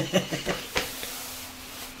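A pause in a conversation: a faint trailing bit of voice, a single click just under a second in, then steady faint hiss and a low hum of the recording's background noise.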